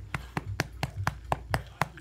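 A hand patting a short-haired dog's back in quick, even slaps, about four a second, eight pats in all.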